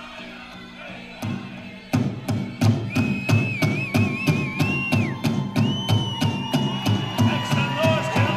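Powwow drum group's big drum: after a quieter start, a single beat, then from about two seconds in a steady beat of about three strokes a second, with high wavering calls over it.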